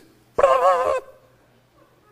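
A short, high, quavering vocal sound from a person, lasting about half a second and starting about half a second in, then only a faint low hum.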